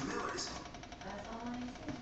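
Indistinct background speech, with no clear non-speech sound standing out.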